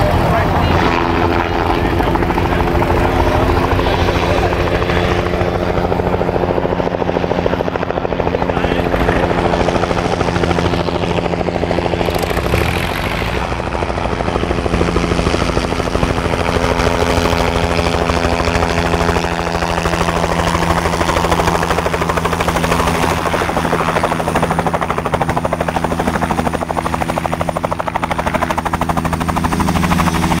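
Bell 505 Jet Ranger X helicopter, its turboshaft engine and two-blade main rotor running steadily through an approach, a low hover and setting down on grass with the rotor still turning.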